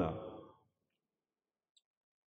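A man's voice trailing off at the end of a spoken word, then dead silence, with one faint click near the end.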